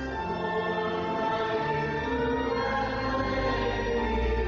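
A hymn sung by voices over an accompaniment, in slow, held notes that move from one to the next every second or so.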